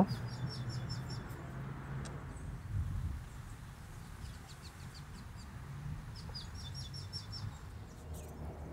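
A small bird chirping in quick runs of short, high chirps, once near the start and again about six seconds in, over a faint low steady background.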